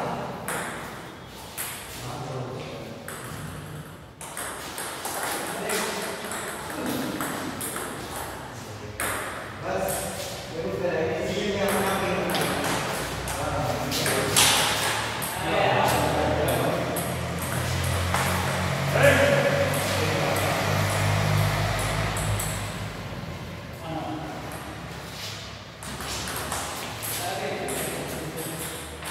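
Table tennis ball being struck back and forth between rubber paddles and bouncing on the table in rallies, a string of sharp light clicks.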